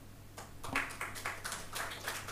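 Light, scattered applause from a small audience, starting about half a second in, over a faint steady low hum.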